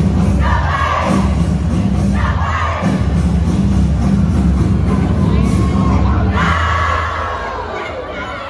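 A cheerleading squad shouting and cheering in unison over a heavy-bass routine music track. The music stops about six and a half seconds in, and the group shouting and cheering carry on alone.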